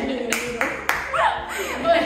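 Three quick hand claps, about a third of a second apart, followed by a woman laughing.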